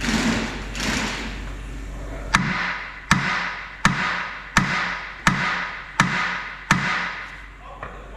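Hammer striking steel at a forklift steer axle during reassembly: two duller knocks, then seven sharp, ringing blows, evenly spaced at about three every two seconds.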